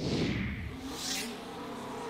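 Race-car whoosh sound effect from a match-results graphic: a sudden loud low rush, a sweep that falls and then rises again about a second in, and steady music tones coming in underneath.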